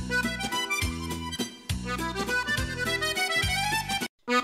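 Accordion music: a lively melody over a repeated bass accompaniment, cutting off abruptly at the end.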